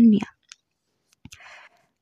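A narrator's word ends, then comes a pause of about a second and a half holding only two faint clicks and a brief soft hiss. These are the narrator's own mouth and breath noises close to the microphone.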